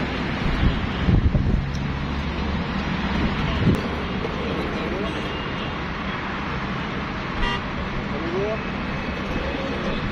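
Outdoor street ambience: indistinct voices of people around, with road traffic and car horns.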